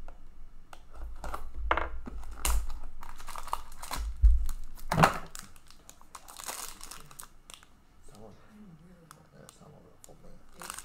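Clear plastic wrapper of a 2019-20 Upper Deck Engrained hockey card pack crinkling and tearing as it is opened by hand, with a couple of handling thumps about four to five seconds in. The crackling eases off in the last few seconds.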